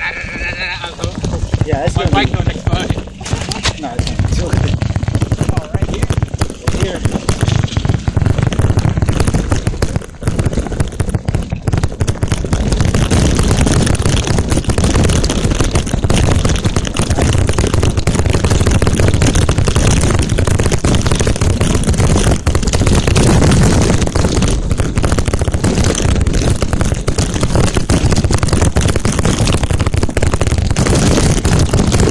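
Wind rushing over the microphone and knobby mountain-bike tyres rolling fast over a loose gravel dirt trail, with the bike knocking and rattling over bumps. The noise is loud and constant, and grows steadier after about twelve seconds.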